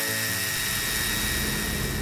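Angle grinder cutting steel rebar: a steady high whine over a dense hiss.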